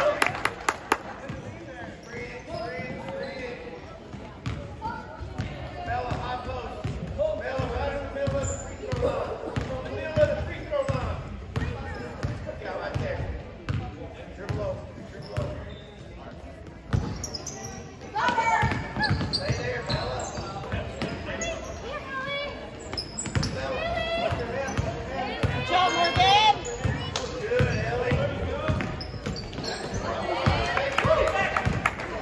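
Basketball bouncing on a hardwood gym floor during play, with repeated short knocks, under voices of players and spectators echoing in a large gym.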